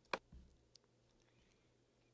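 A single sharp computer-mouse click just after the start, then near silence: room tone with a few faint ticks.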